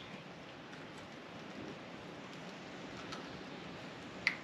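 Faint steady background hiss with no distinct event, and a faint click about three seconds in.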